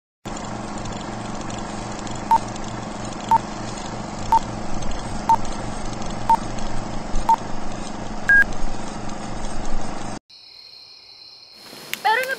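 Film-leader countdown sound effect: a steady hiss and low hum like an old film projector, with a short beep once a second, six times, then a single higher beep. The hiss cuts off suddenly about ten seconds in, leaving a quieter stretch with a faint high tone and rising noise near the end.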